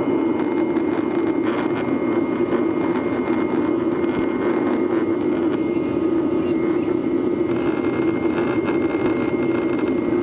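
Cabin noise of a GOL Boeing 737's jet engines at climb power just after takeoff. It is a steady, low rushing drone with a thin, faint high whine running through it.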